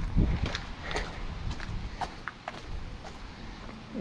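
Footsteps of a person walking at an even pace on outdoor ground, about two steps a second.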